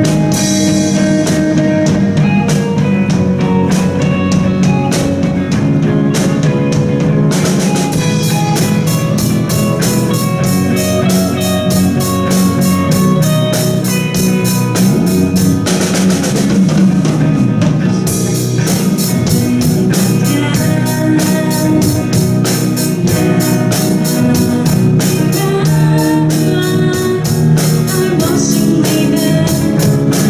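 Live rock band playing: electric guitars, electric bass and drum kit, with steady drumming throughout and a cymbal crash about seven and a half seconds in.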